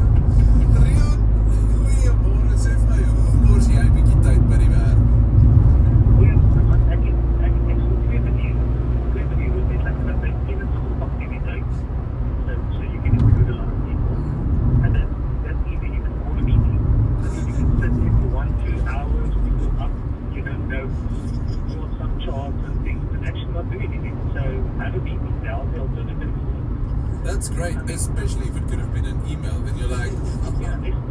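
Steady road and engine noise inside a moving car's cabin, a low drone that eases about two-thirds of the way through. A radio voice talks faintly underneath.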